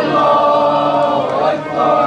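A crowd of marchers chanting together in a drawn-out, melodic unison line. They hold a long note, and the pitch shifts about a second and a half in.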